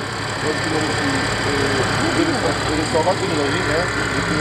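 Indistinct voices of people talking, over the steady hum of a car engine idling.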